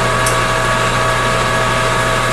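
Metal lathe running with the spindle turning: a steady hum with several steady whining tones over it, and one brief faint tick about a quarter second in.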